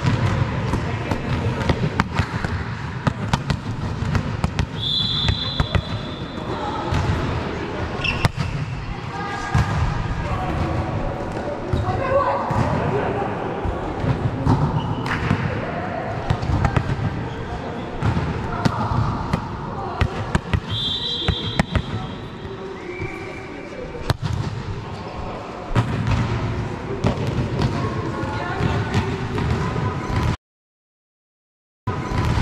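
Volleyball game: a ball being struck and bouncing on the court floor, with repeated sharp impacts throughout, over players' voices.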